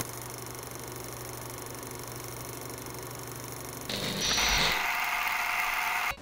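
Title sound effect: a steady mechanical whirr over a low hum, turning louder and hissier about four seconds in.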